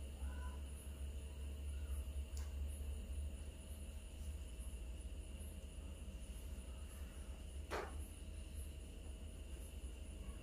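Quiet room tone: a steady low hum under a faint high chirping that pulses about twice a second, with a single soft click about three-quarters of the way through.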